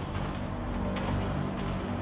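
A steady low hum with a few faint, held low tones and no sharp sounds.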